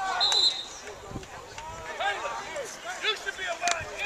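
Football players and coaches shouting on the sideline during a play, with a short referee's whistle blast near the start and a sharp crack a little before the end.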